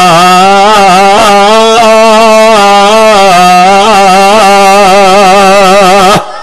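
A man chanting a Quran verse in melodic tajweed recitation, holding one long, loud, drawn-out note with wavering ornaments for about six seconds before breaking off at the end.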